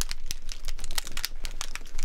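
Foley fire effect: two cloths, a heavy tan one and a small cotton one, crumpled and wrung together in the hands, giving a dense, irregular crackling that imitates a burning wood fire.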